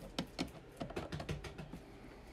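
Hard plastic graded-card slabs clicking against each other as they are handled, a quick irregular run of light clicks.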